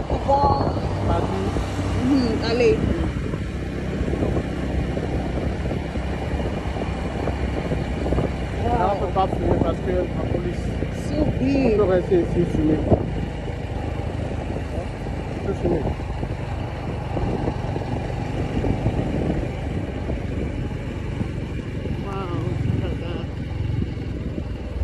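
Engine and tyre noise of a moving road vehicle heard from on board: a steady low rumble.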